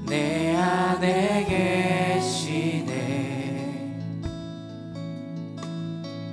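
A worship team singing a slow worship song with acoustic guitar. Voices carry a sung phrase for the first two seconds, then held chords ring on more quietly.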